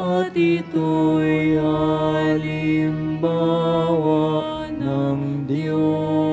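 Slow, meditative church music for the communion at Mass, with long held notes that change pitch every second or two.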